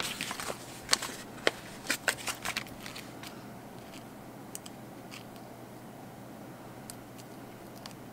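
Paper sticker sheet being handled and stickers peeled off it: a quick run of crackles and sharp ticks over the first three seconds, then a few faint taps as stickers are pressed down onto the planner page.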